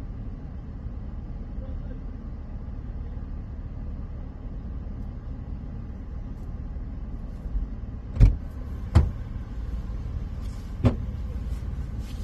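Steady low rumble of a vehicle idling, heard from inside the cabin. Sharp single knocks break in about 8 and 9 seconds in and again near 11 seconds, louder than the rumble.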